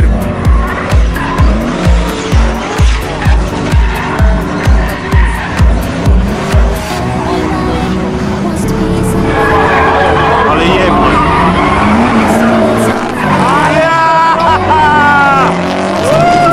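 Music with a steady bass beat, about two beats a second, until about seven seconds in. Then a drifting car's engine revs rise and fall over tyre squeal and skidding.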